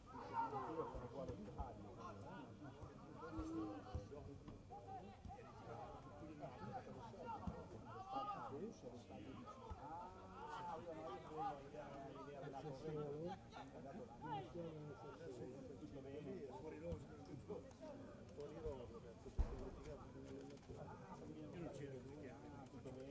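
Indistinct voices of players and spectators calling out during an outdoor football match, with one sharp knock about nineteen seconds in.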